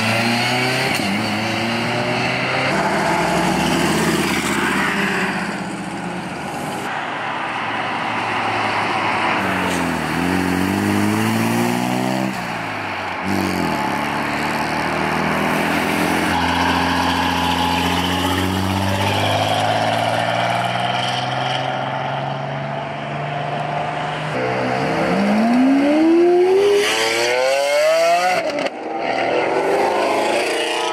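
Several performance cars accelerating away one after another, their engines revving and rising and falling in pitch as they pass. The loudest is a Lamborghini Aventador's V12 pulling hard about 25 seconds in, its pitch climbing steeply through the gears.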